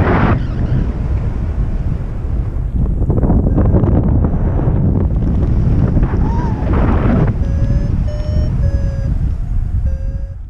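Airflow rushing over the microphone of a paraglider in flight, loud and steady. From about seven and a half seconds in, an electronic flight instrument, likely a variometer, beeps in short steady tones at about two a second.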